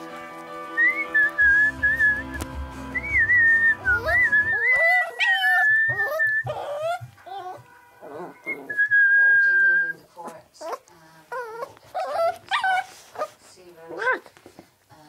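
A person whistling short notes to West Highland white terrier puppies, with one longer held whistle a little after the middle. The puppies answer with many short whines and yelps, starting about four seconds in.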